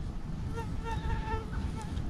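A mosquito's thin, high whine buzzing close to the microphone, coming and going for about a second in the middle.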